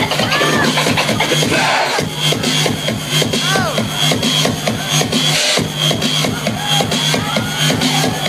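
Electronic dance music played loud on a DJ's decks with a steady beat, cut up live by scratching: short swooping pitch sweeps over the beat.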